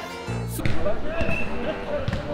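A single sharp thud of a jokgu ball striking or bouncing on a packed-dirt court about half a second in, followed by players' voices in the background.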